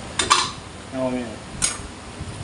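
Metal utensil clattering against a wok of stir-fried noodles, two short sharp knocks about a second and a half apart.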